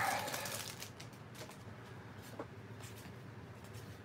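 Faint rustle and crinkle of a cellophane pack wrapper being pulled off a stack of baseball cards, then the cards being handled, with a few soft clicks.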